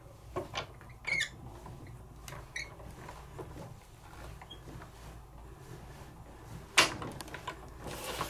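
Spellbinders Platinum Six manual die-cutting machine being hand-cranked, rolling the stack of cutting plates and die back through its rollers. A few light clicks and short squeaks come in the first few seconds, and there is one sharp knock about seven seconds in.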